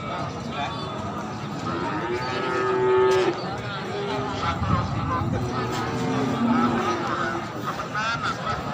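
Goats bleating, several calls over one another. The longest and loudest comes about two to three seconds in, followed by shorter, lower calls.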